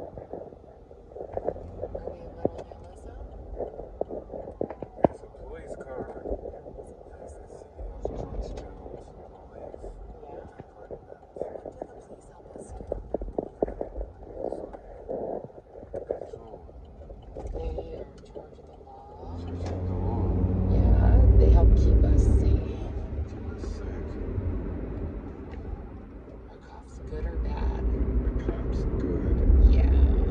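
Road and engine noise inside a moving car's cabin. A deep rumble swells about twenty seconds in, then fades, and builds again near the end.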